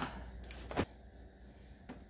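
Two sharp clicks about a third of a second apart, then a fainter click near the end, from hand tools and a hose fitting being handled as red-handled pliers are set on a spring hose clamp.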